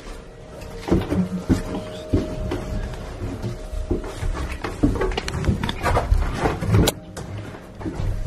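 Irregular thumps and knocks of footsteps on bare wooden stair treads, with clothing brushing the walls in a narrow stairwell; one sharp knock about seven seconds in is the loudest. Background music runs underneath.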